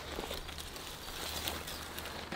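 Faint rustling and light scraping as a corrugated bitumen cover sheet is lifted off the grass, with a cricket chirping faintly.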